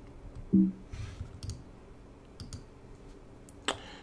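Several faint, separate clicks of a computer mouse, spread over the last few seconds, as the presentation slide is advanced. About half a second in there is a brief short voice sound.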